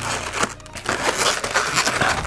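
Inflated latex twisting balloons rubbing and rasping against each other as they are twisted and wrapped by hand, a steady scratchy rubbing with a few sharper ticks.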